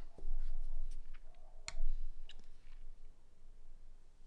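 A handful of light clicks and taps from handling a nail art dotting tool at the nail, about six in the first two and a half seconds, the sharpest a little under two seconds in, then quieter.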